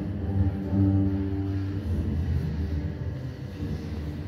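Live jazz from a trio of trumpet, double bass and drums, with long low sustained notes, sounding in a large, bare concrete hall and easing off somewhat near the end.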